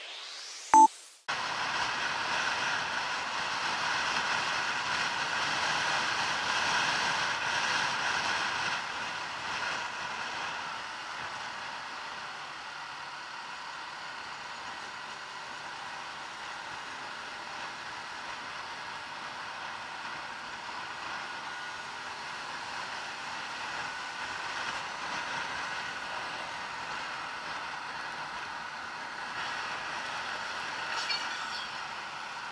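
A short chime about a second in, then a Bajaj Pulsar NS 200 motorcycle being ridden: engine running steadily under wind and road noise, somewhat louder for the first ten seconds and then steadier.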